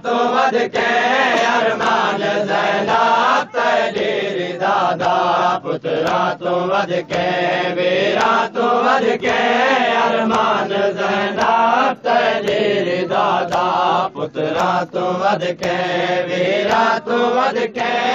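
Saraiki noha, a Shia lament, chanted by voice: a steady melodic line that rises and falls, broken by short pauses for breath.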